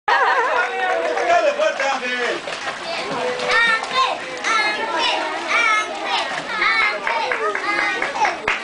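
Several young children shouting and calling out in high voices, overlapping one another without a break.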